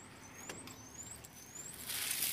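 A bird calling in the background: a series of thin, high whistles, each rising in pitch, repeated about every half second. A single sharp click comes about a quarter of the way in.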